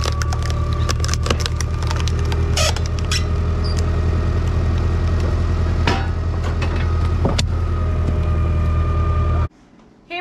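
Engine-driven hydraulic log splitter running steadily as its ram forces a log into the wedge, with the wood cracking and splintering several times as it splits. The sound cuts off suddenly near the end.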